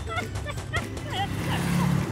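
Squeaky gibberish cartoon voices chattering, then a cartoon school bus driving off: a low engine hum and a rush of noise that build to their loudest near the end.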